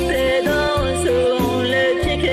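A Burmese song: a singer's voice holding and bending sung notes over a band backing with bass and a steady beat.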